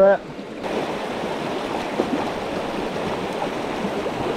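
River water rushing over rocks in a riffle or rapid, a steady hiss that steps up and turns brighter about half a second in.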